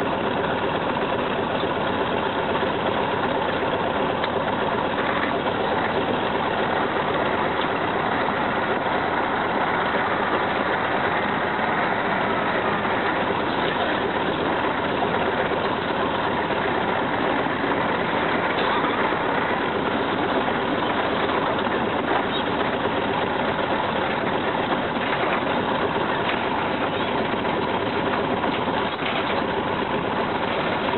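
Heavy diesel engine running at a steady speed, with no clear revving or change.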